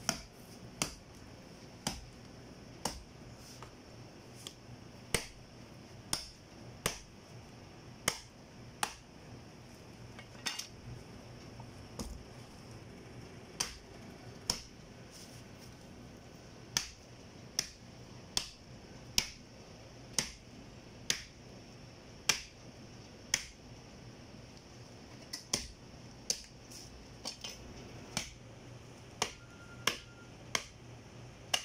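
Heavy meat cleaver chopping a skinned cow's head on a wooden chopping stump: sharp single strikes about once a second, with a few short pauses.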